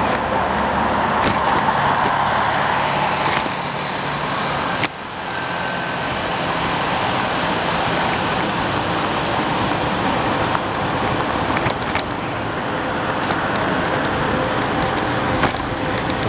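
Steady city traffic and road noise heard from a moving bicycle, a continuous rush with a few sharp clicks and rattles, and one knock about five seconds in.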